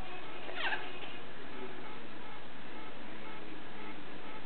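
A single short animal call, falling steeply in pitch like a meow, about half a second in.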